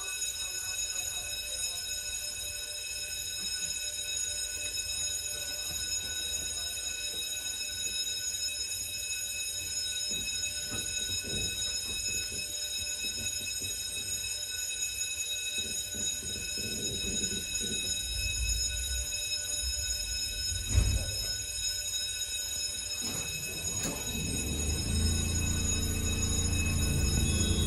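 Interior of a standing MBTA Orange Line Hawker Siddeley 01200-series subway car: a steady high electrical whine made of several held tones over a low rumble, with one sharp knock about 20 seconds in and a lower hum building near the end.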